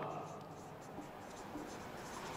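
Marker pen writing on a whiteboard, a faint run of short strokes as a word is written out.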